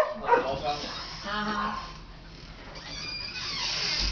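Chow chow dogs making short whimpering and yipping noises as they play, with one drawn-out whine about a second in.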